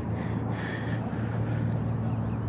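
Steady vehicle noise on a roadway: a constant low engine hum with road noise under it.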